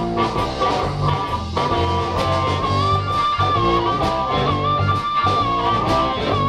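Live electric blues band playing an instrumental passage: electric guitar, bass guitar and drum kit, with a lead line holding one long high note that bends slightly.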